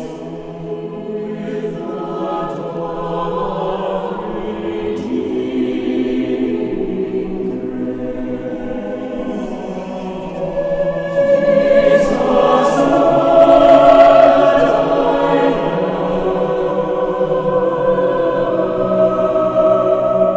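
Mixed choir singing held, sustained chords, swelling louder about eleven seconds in and peaking a few seconds later.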